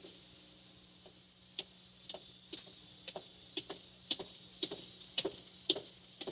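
Radio-drama sound effect of footsteps walking at about two steps a second, starting a little over a second in, faint over a low steady hum.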